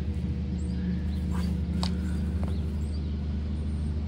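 A steady low hum, with a few faint crinkles from a fertilizer bag being handled.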